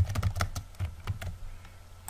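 Typing on a computer keyboard: a run of irregular keystroke clicks over a low steady hum.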